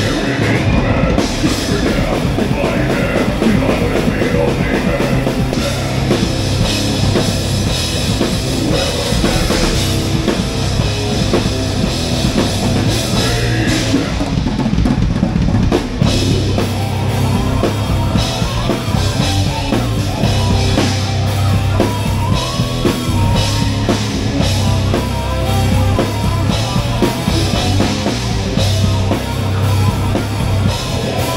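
Heavy metal band playing live: drum kit with bass drum, distorted electric guitars and bass guitar, heard loud from the stage.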